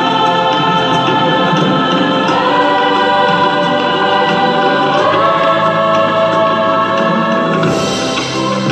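Women's choir singing long held chords, moving to a new chord twice.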